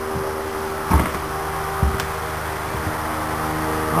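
A steady machine hum made of several held low tones, with two dull thumps about one and two seconds in and a sharp click just after the second.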